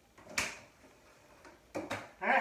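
A sharp knock about half a second in, then two quicker bumps near the end, as a silicone baking mat and other items are handled and set down on a desk.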